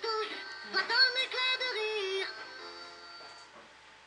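Disney Mickey activity table's small electronic speaker playing a jingle with a synthetic-sounding sung voice, which ends a little over two seconds in with a few held notes fading away.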